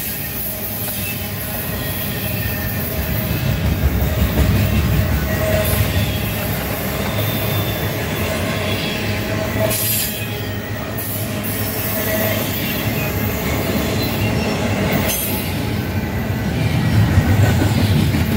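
Double-stack intermodal container train rolling past at close range: steel wheels on the well cars rumbling steadily over the rails, with a faint high wheel squeal.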